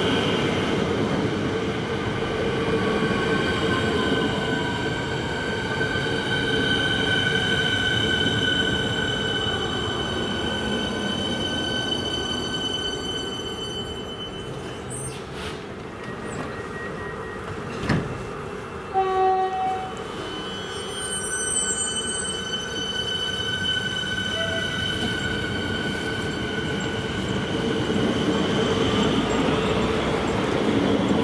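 Siemens Nexas electric multiple unit at the platform, giving off a steady whine of several tones from its electrical equipment over a low rumble. About halfway there is a sharp click and two short beeps, and near the end the whine and rumble swell again.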